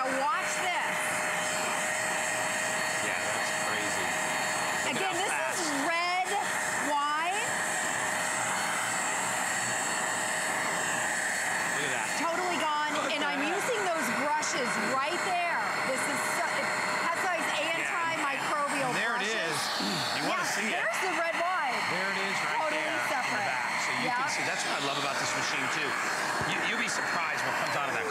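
Hoover Spotless portable carpet spot cleaner running steadily with a constant whine while its nozzle sucks water and red wine up out of carpet. Voices talk over it.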